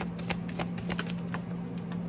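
A deck of oracle cards being shuffled by hand, the cards snapping and slapping together in a quick, irregular series of sharp clicks over a steady low hum.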